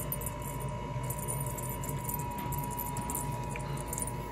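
Light rustling of a cat wand toy brushing over carpeted stairs, coming and going, over a steady hum with a faint high tone.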